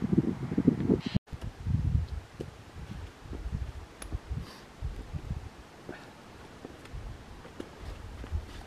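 Wind buffeting the microphone in uneven low gusts, with a few faint clicks. The sound drops out for a moment about a second in.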